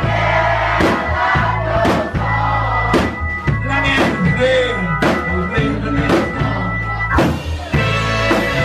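Live rock band playing, with drum hits about once a second over steady bass, fiddle and a singing voice.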